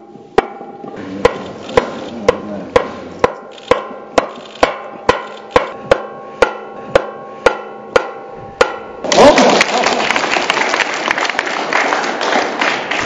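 A steady beat of sharp, percussive strikes about twice a second, with sustained musical tones underneath. About nine seconds in, a crowd breaks into loud applause.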